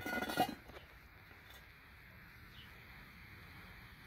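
A brief voice-like sound right at the start, then faint steady background hiss with nothing else in it.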